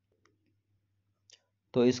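Near silence with two faint short clicks, one about a quarter second in and one just past a second in, before a man's voice resumes near the end.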